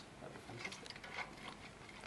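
A stirring rod lightly clinking against the inside of a glass beaker of water as glucose is stirred in to dissolve: a few faint, irregular ticks.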